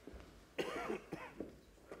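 A few short, throaty bursts of a person's voice, like coughs, between about half a second and a second and a half in, with one more brief sound near the end.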